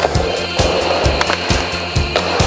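Skateboard wheels rolling with a few sharp clacks of the board, mixed with a music track that has a steady beat.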